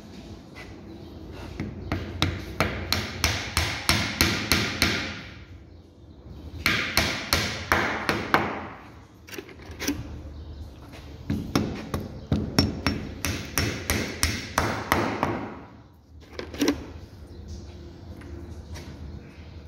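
A steel hammer with a wooden handle driving wooden dowels into glued holes in wooden table slats. It comes in three runs of quick blows, about three a second, with one last single blow near the end.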